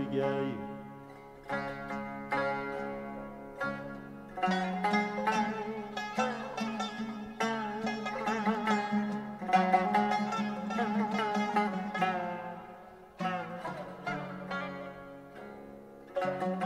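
Uzbek traditional music: an instrumental passage of plucked-string notes played over a steady low sustained tone.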